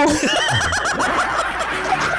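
Several people laughing together at once, with overlapping bursts of laughter.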